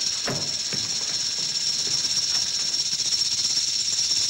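A loud, steady high-pitched buzzing hiss with a thin whistle-like tone running through it.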